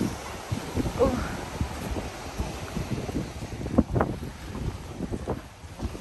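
Wind rumbling and buffeting on a handheld phone's microphone outdoors, with irregular low knocks and bumps from handling and walking.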